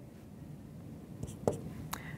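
Dry-erase marker writing on a whiteboard: a few short strokes in the second half.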